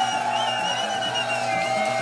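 Electronic dance music mixed live by a DJ over a club sound system: sustained synth chords over a pulsing bass line, with a high wavering tone through the first part.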